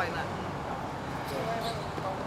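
A woman's voice finishing a phrase, then quieter speech over a steady outdoor background noise with a low hum.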